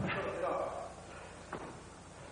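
A man's voice calling out briefly at the start, fading within the first second, then a single sharp thud about one and a half seconds in.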